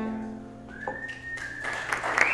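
The final chord of a fiddle and acoustic guitar rings out and fades. Less than a second in, a long, slightly rising whistle of approval comes from the audience, and clapping starts near the end.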